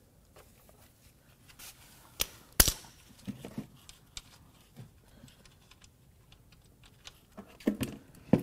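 A few sharp metallic clicks and taps, the loudest two about two and two and a half seconds in, from a wrench working loose the oil drain plug on a Mercedes M156 V8's oil pan, over a quiet background.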